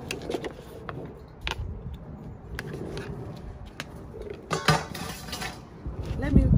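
Hand-harvesting peppers: a few sharp clicks from pruning shears and from handling a plastic scoop, with a longer rustle of pepper-plant foliage about four and a half seconds in.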